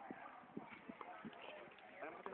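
Near silence in the open: faint distant voices and a few soft, irregular knocks.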